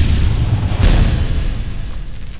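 Sound effects of an animated logo outro: a deep rumbling boom with a sharp impact less than a second in, then a slow fade.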